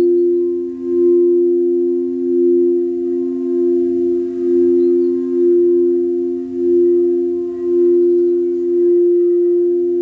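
Crystal singing bowls played with mallets, two bowls sounding together in two steady, sustained low tones. Their loudness swells and dips about once a second.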